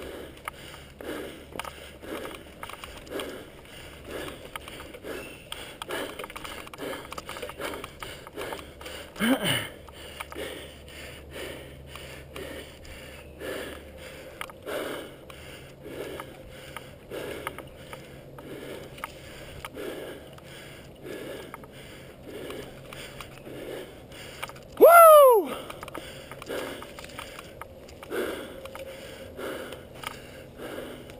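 Mountain biker's heavy, rhythmic breathing, about two breaths' sounds a second, while riding downhill singletrack. A short "woo" about nine seconds in, and a louder whoop, rising then falling in pitch, about twenty-five seconds in.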